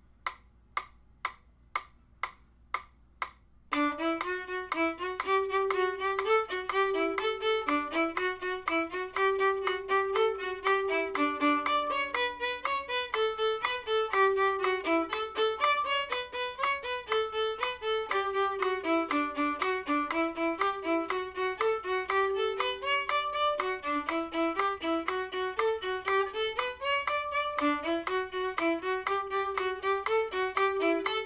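Solo violin playing a fast, unbroken stream of even notes in D major, after a few seconds of even clicks at about two a second.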